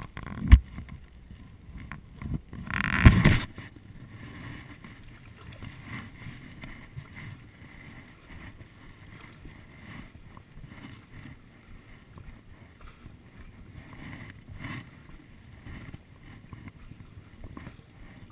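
Water sloshing and paddle strokes around a stand-up paddleboard. There is a sharp knock about half a second in and a louder rush of noise around three seconds in, then soft, irregular lapping and dipping of the paddle.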